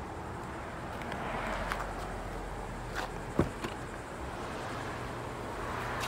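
Car door being unlatched and swung open: a sharp click about three seconds in, followed at once by a short thud, over steady outdoor background noise.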